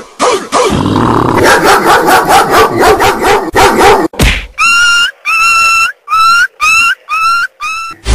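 Dance remix music: a dense, fast beat for the first half, then a short yelping sample repeated about seven times, each call rising in pitch at its start.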